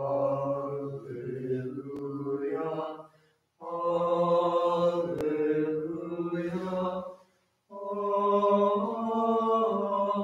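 Byzantine liturgical chant sung without accompaniment, in three phrases of long held notes, each a few seconds long, with short pauses between them.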